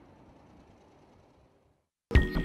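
Near silence: a faint hiss that fades out and goes fully silent about one and a half seconds in.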